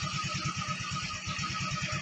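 Yamaha Mio Gear scooter's single-cylinder four-stroke engine idling with an even, rapid low pulse of about fourteen beats a second. The idle is very low and the scooter shakes as if about to stall, which the owner says is not normal.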